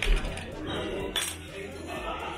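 Clinks and knocks of a glass bottle and metal bottle opener being handled on a table, with a sharp knock and thump at the start and another knock about a second in, over background chatter and music.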